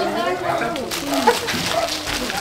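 A small dog barking in short bursts, with people talking in the background.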